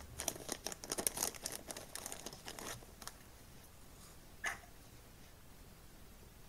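A clear plastic component bag crinkling as it is handled, with dense crackles for nearly three seconds and then quieting. A single short, sharp sound comes about four and a half seconds in.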